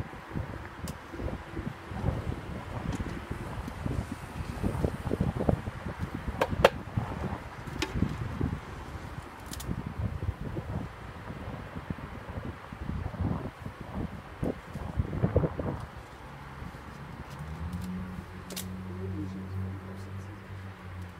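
Handling noise from a wooden Mini Plus beehive being worked, with wind buffeting the microphone: irregular rumbling and knocks, with a few sharp clicks of wood on wood. About three-quarters of the way through, a steady low hum sets in.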